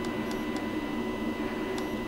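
Steady background hum with a faint high-pitched steady tone and a few faint scattered ticks, with no speech.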